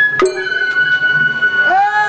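Japanese festival float music: a bamboo flute holds one high note while a small metal gong is struck once about a quarter second in, and near the end a voice calls out over the music.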